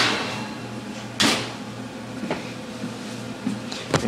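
A disposable aluminium foil pan being handled and set down on a counter: a sharp rattling crinkle at the start and another about a second later, then a few lighter ticks, over a faint low steady hum.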